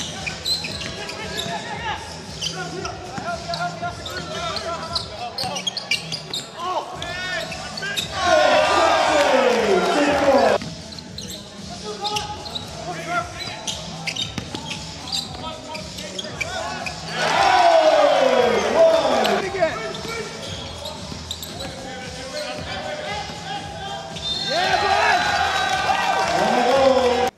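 Live basketball game sound in a gym: a basketball bouncing on the hardwood court and voices around it, with three loud bursts of cheering from the crowd and bench, the first about eight seconds in and the last near the end.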